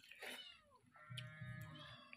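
A cat meowing faintly, twice: a short falling call near the start and a longer, steadier call in the second half that drops in pitch as it ends.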